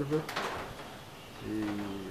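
A man's voice during a pause in his speech: a word trails off, a brief click follows, and there is a second of background hiss. Near the end comes a held, level-pitched hesitation sound.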